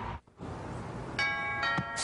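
A brief drop-out, then two sudden bell-like metallic strikes about a second in, each ringing on for a moment over a steady hiss.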